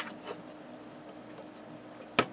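A sharp click as hands handle a hard drive's power lead and cable connections, followed by faint ticks of handling over a low steady hum.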